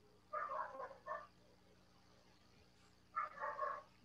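Three short bouts of animal calls, faint over a video-call connection: one about a third of a second in, a brief one just after a second, and a longer one a little after three seconds.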